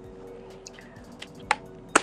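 Two sharp clicks about half a second apart near the end, from an eyeshadow palette being handled and put away, over a faint steady hum.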